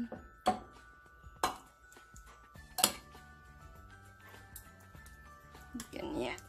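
Soft background music with steady held tones, over which a spoon knocks sharply against the glass baking dish three times in the first three seconds while sauce is spread.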